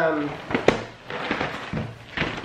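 Cardboard cereal boxes being handled: a sharp knock a little under a second in, then several softer knocks and scuffs of cardboard.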